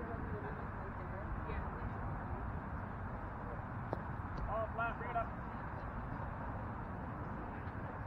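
Steady low outdoor background noise at a night softball field. A single sharp knock comes just before four seconds in, as the pitch arrives at the plate. About a second later a person gives a short shouted call, the loudest sound here.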